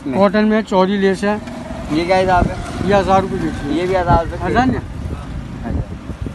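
Mostly speech: people talking, over a steady low background rumble.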